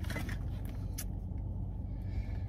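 A car engine idling, heard from inside the cabin as a steady low hum, with a couple of light clicks near the start and about a second in.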